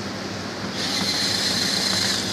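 Cordless drill-driver whining as it drives a screw into the sheet-metal lid of an electrical control box, starting under a second in. Underneath is a steady low hum.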